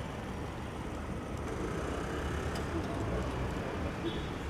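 A car running close by amid street noise, with voices of a crowd in the background.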